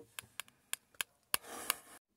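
A series of light, sharp clicks and taps, about six in two seconds at uneven spacing, with a short rustle near the end.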